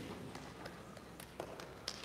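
A few faint, scattered taps and knocks, irregularly spaced, over the quiet background of a large hall.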